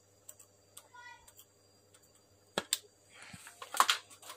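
Scattered small clicks and rustles of wires and a circuit board being handled, with the loudest cluster near the end.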